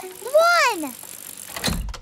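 Cartoon sound effect of a bicycle sliding into a bike rack: a short swoosh ending in a low thump near the end, after a girl's voice calls out "one!".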